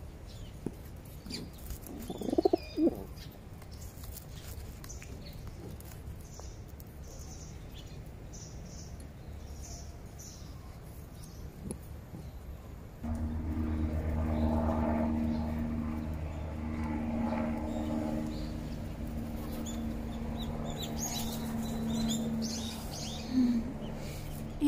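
Feral pigeons close by, with a loud coo about two seconds in and another near the end. About halfway through, a steady low hum with several held pitches sets in suddenly and runs under the birds.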